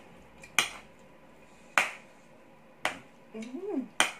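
A person eating with sharp, wet mouth smacks while chewing, about one a second, three in all, then a short hummed 'mm' rising and falling in pitch near the end.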